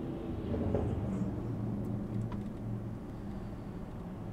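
A car driving, a low steady rumble with a hum in it, with a few faint scattered sounds from the street.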